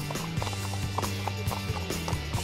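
Background music with held tones, over the hooves of several horses clip-clopping at a walk on an asphalt path.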